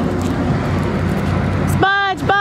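Steady outdoor background noise with a low hum, then a high-pitched voice starts calling out near the end.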